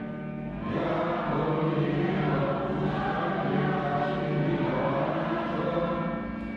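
A choir singing slow, held choral phrases as background music, with a short lull at the start before a new phrase swells in under a second in.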